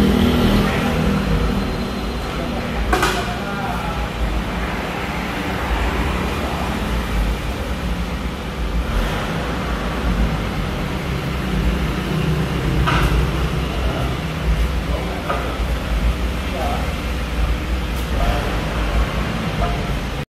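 A vehicle engine idles with a steady low rumble, and sharp metallic knocks come now and then, a few seconds apart.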